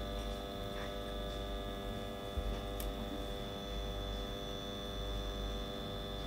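Small stepper motor on a linear positioning stage running slowly under a Vexta SG8030J pulse controller: a steady electrical hum made of several fixed tones, with a thin high whine above it.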